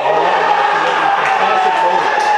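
Loud, held shouting from several voices at once as a goal goes in, rising suddenly at the moment of the goal.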